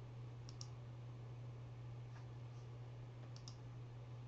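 Two quick double clicks, one about half a second in and one near the end, over a faint steady low hum.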